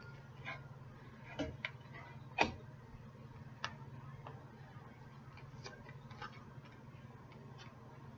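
Oracle cards being handled: a few faint, irregularly spaced clicks and taps, the loudest about two and a half seconds in, over a low steady hum.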